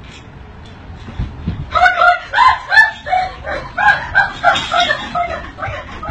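A low thump about a second in, then a woman's loud, repeated short screams, about three a second, as she is frightened by the prank.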